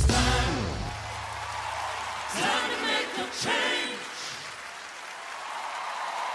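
The end of a live gospel song: the band's last chord dies away in the first second, then an audience applauds and cheers, with a few voices calling out.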